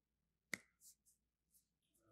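Near silence, broken by one sharp click about half a second in, followed by a few faint, brief hisses.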